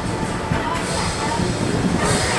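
A PeopleMover train rolling along its track, a steady rumble and rushing noise.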